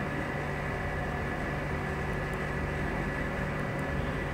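Steady background hum with hiss and a thin, steady high whine, unchanging throughout, with no distinct events.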